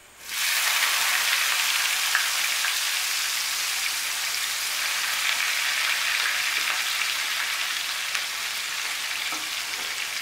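Sliced onions hitting hot mustard oil in a wok: a sudden sizzle about a third of a second in, then a steady frying hiss that eases slightly toward the end.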